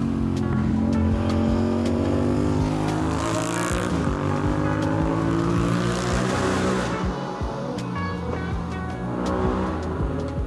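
A vehicle engine revving hard and pulling through the gears, its pitch climbing and dropping several times with each shift.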